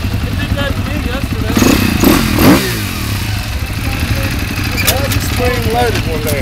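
Dirt bike engines running, with one bike revving up and passing close about two seconds in, its pitch sweeping up then down as it goes by.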